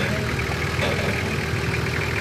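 Nissan Patrol 4x4's engine running steadily at low revs as it crawls down a steep rock face.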